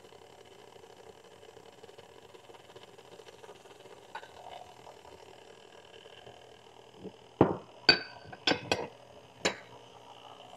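Vintage Sunbeam Mixmaster stand mixer running steadily with a low hum, beating a wet cake batter as milk is poured in. From about seven seconds in, five sharp clinks and knocks of glassware and containers being handled on the counter, one with a short ring.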